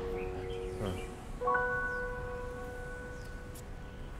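Soft background music: a bell-like note is struck about a second and a half in and rings on, slowly fading, over a low held tone.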